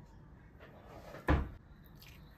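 A single short, dull knock just over a second in, deep and thudding, from something in the kitchen being set down or bumped.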